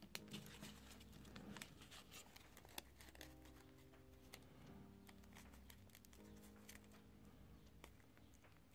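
Near silence: faint background music, with soft crinkles and clicks of origami paper being folded and creased by hand.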